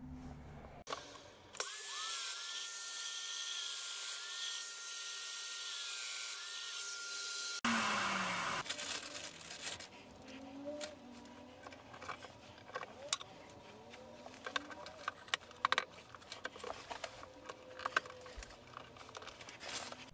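A power tool runs steadily for about six seconds, then cuts off. After that come many light clicks and knocks of wooden panels and small wooden tenons being handled and fitted together.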